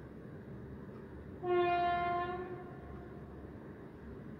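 A single horn blast lasting just over a second, held on one steady pitch with many overtones, that fades out.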